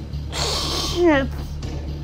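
A woman's sharp, breathy gasp, followed by a short voiced cry that falls in pitch near the middle.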